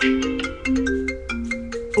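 Mobile phone ringtone playing a quick melody of short notes, stopping at the end as the call is answered.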